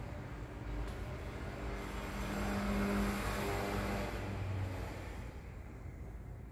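A motor vehicle passing by, its engine and road noise swelling to a peak about halfway through and fading away near the end.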